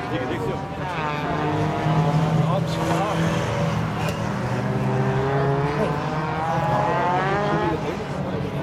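Several rallycross cars' engines racing round the circuit, their pitch rising and falling repeatedly as they rev, shift and lift off.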